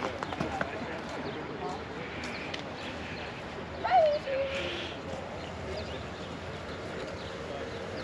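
Outdoor background of people talking at a distance. About halfway through comes one brief, louder sound that falls in pitch.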